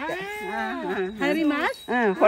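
A woman's high-pitched voice in drawn-out, sing-song syllables, its pitch sweeping up and down.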